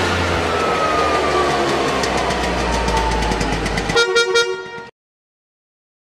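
Motor vehicle sound effect: an engine running with a tone that slides steadily down in pitch, then a rapid string of horn toots about four seconds in, cutting off sharply just before five seconds.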